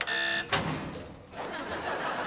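A button click and a short, steady buzzer tone lasting about half a second, cut off by a sharp bang. A noisy wash of sound then builds about one and a half seconds in.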